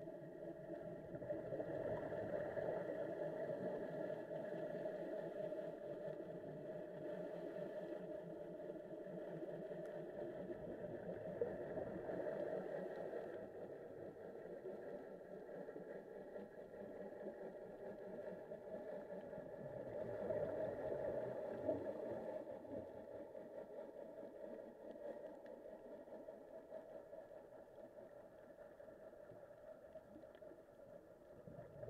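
A steady motor drone heard underwater, most likely a boat engine carried through the water, holding an even tone that swells slightly and then eases off.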